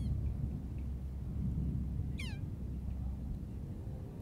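Steady low background rumble with a single short, high animal call sliding down in pitch about two seconds in, and a fainter brief chirp right at the start.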